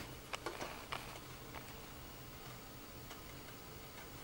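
Scissors snipping through a paper carving pattern: four or so short, sharp snips in the first second and a half, then only a faint low hum.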